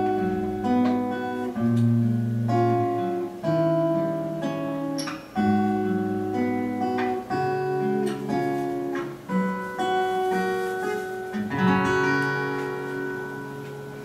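Solo steel-string acoustic guitar playing the song's closing instrumental bars, a run of picked and strummed chords. Near the end a final chord is left to ring and fades away.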